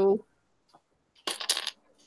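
A brief clatter of small, hard clicks lasting about half a second, starting a little over a second in.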